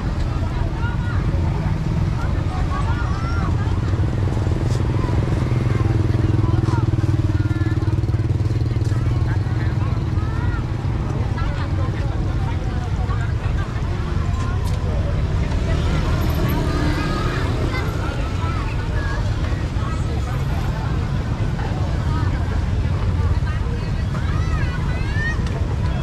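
Busy street-market ambience: background chatter from passers-by and vendors over a steady low rumble of passing traffic and motorbike engines.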